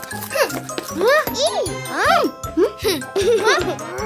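Light children's cartoon background music with a tinkling accompaniment, under a cartoon character's wordless vocal sounds: a string of short exclamations that rise and fall in pitch.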